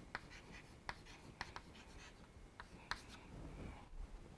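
Chalk writing on a blackboard: faint, irregular taps and short scratches as the chalk strikes and drags across the board to form letters.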